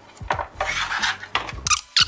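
A soundbar being slid and handled on a desk: a few irregular scraping and rubbing strokes with small knocks.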